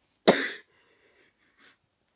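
A single sharp cough from a boy with a cold, about a quarter of a second in.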